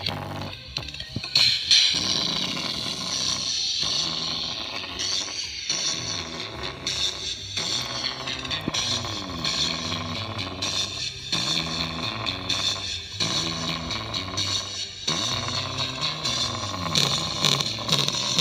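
A tiny 3-watt, 4-ohm speaker overdriven with bass-boosted music, its cone bottoming out so it sounds harsh and horrible. The pulsing bass line breaks off briefly about every two seconds. The speaker is being pushed past its limits: its coil is overheating and starting to smell.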